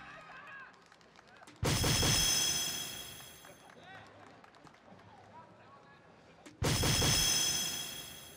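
Electronic soft-tip dartboard's hit sound effect, twice, about five seconds apart: each a sudden loud burst with a bright ringing tone that fades over about a second and a half. Each is set off by a dart landing in the triple 16.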